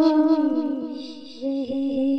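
A woman's voice humming long held notes in a ghazal. The first note fades away, and a second, slightly lower note begins about one and a half seconds in and is held.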